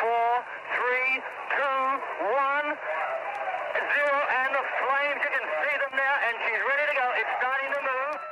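Speech only: a voice talking continuously through a narrow, tinny radio-style channel, as in archival broadcast audio.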